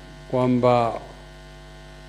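Steady electrical mains hum in the microphone and sound system, heard plainly through a pause in a speech. About a third of a second in it sits under one short spoken word from a man at the microphone.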